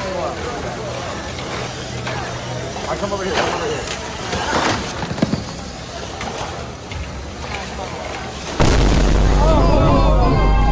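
Indistinct voices of people standing around a robotics field, with shouts here and there. About eight and a half seconds in, a sudden loud, steady low rumbling noise starts and covers everything else.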